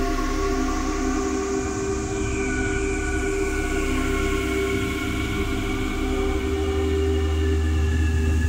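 Ambient synthesizer music: a sustained drone of held chords over a low bass note, without beats, with a faint high tone gliding slowly down in the middle.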